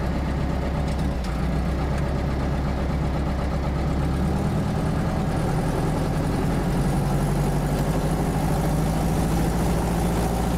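American Legend Cub's air-cooled flat-four piston engine and propeller running at low power shortly after a cold start, a steady drone that steps up a little about a second in and shifts slightly in pitch around four to five seconds in.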